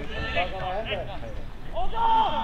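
Several distant voices shouting and calling on a football pitch, overlapping, with a louder call near the end.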